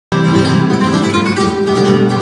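Two acoustic flamenco guitars playing together, a dense run of plucked notes and chords.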